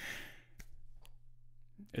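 A man's breathy exhale at the tail of a laugh in the first half second, then a quiet pause with a faint click or two over a low steady hum.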